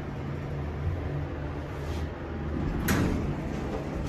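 Montgomery hydraulic elevator's doors sliding open over a steady low hum, with a faint click about two seconds in and a louder knock near three seconds.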